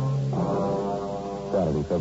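Radio-drama orchestral music bridge of long held low brass chords. The chords end near the end and a man's narrating voice comes in.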